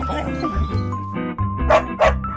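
A puppy yipping over organ music: one short yip at the start and a sharper, louder one near the end.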